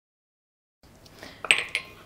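A short clink and clatter of kitchenware against a pot about one and a half seconds in, after a stretch of dead silence.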